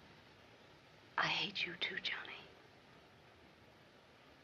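A woman whispering a short line of film dialogue about a second in, over the faint steady hiss of an old film soundtrack.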